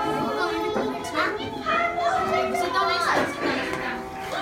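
Many children's voices chattering and calling out together, with music playing in the background.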